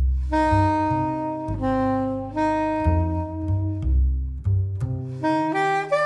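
Jazz-style instrumental music: a saxophone playing a slow melody of held notes over a double bass line.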